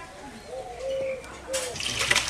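A dove cooing, three short rounded coos. Near the end a loud wet rush starts as thick curry is poured from an iron kadai into a metal bowl.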